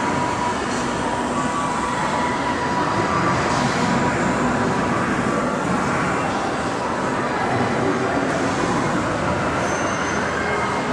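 Steady, loud rumbling noise with a faint, steady high tone on top, unchanging throughout.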